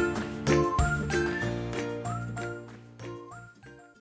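Background music with bright, tinkling bell-like notes and short upward-sliding whistle-like notes over a bass line, fading out toward the end.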